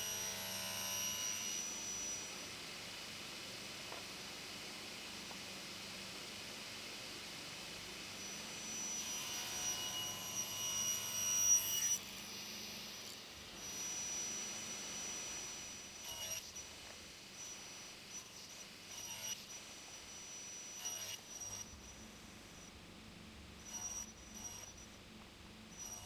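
Table saw running, heard faintly, as plywood strips are crosscut on a sled; the cutting noise swells about nine seconds in and cuts off suddenly near twelve seconds, with a shorter swell soon after. A few light knocks of wood pieces follow later.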